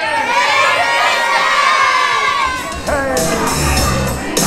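A group of children shouting and cheering together. About two and a half seconds in, music with a bass beat starts up under the voices.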